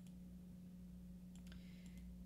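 Near silence: a steady low hum with a few faint clicks in the second half, made while switching the computer screen from the slideshow to a chart.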